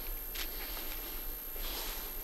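Steady hiss of a gas torch burning, with a faint click about half a second in.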